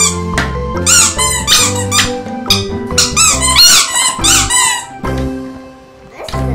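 Rubber squeeze toys squeaking in a rapid run of short, high squeaks for about four seconds, starting about a second in, over background music with a steady bass line.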